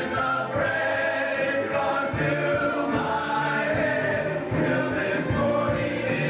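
Cast singing live with band accompaniment in a stage rock-opera number, several voices together over sustained bass notes.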